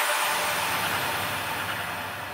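A dense noisy wash with a low rumble under it, slowly fading away after the beat has dropped out: the outro of a drum and bass track.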